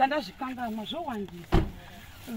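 A woman talking, then a car door shut once with a single heavy thump about one and a half seconds in.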